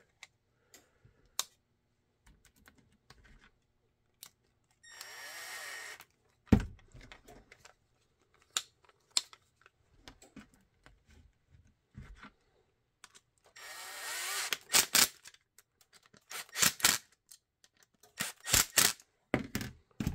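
Cordless power driver running in two short bursts, about five seconds in and again about fourteen seconds in, driving the screws that mount a QLS fork to a Kydex holster. Just after the first burst comes a sharp knock, the loudest sound, and small hardware clicks and taps are scattered throughout.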